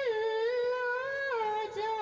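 A girl singing solo and unaccompanied into a microphone, holding two long notes, the second a step lower than the first, about halfway through.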